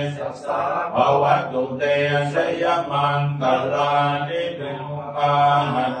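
Thai Buddhist chanting in Pali, recited in unison by a group of voices. It is held on a near-monotone pitch in short phrases with brief pauses between them.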